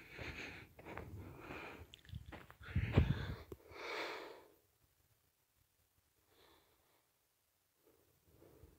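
Breathing close to the microphone: a few soft breaths over the first four seconds or so, with a low bump about three seconds in, then near silence.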